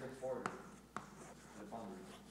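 Chalk writing on a blackboard, with two sharp taps of the chalk striking the board about half a second and one second in.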